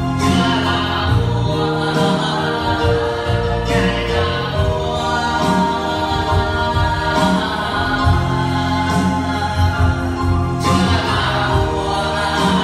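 A worship song: a man singing into a microphone, accompanied by an electronic keyboard with sustained chords and a steady bass.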